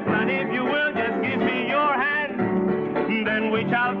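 Latin big-band rumba song from a 1950s TV show, a voice singing over the orchestra.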